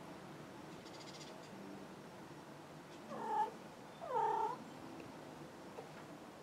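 A cat meowing twice, two short calls about a second apart, the second a little longer.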